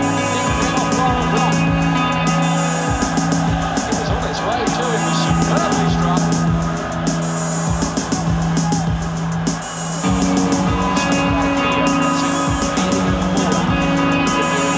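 Live electric guitar played through effects pedals and electronics, in a dense layered texture: held low drone notes under sustained higher tones, with frequent short clicks. The low notes shift to a new pitch about ten seconds in.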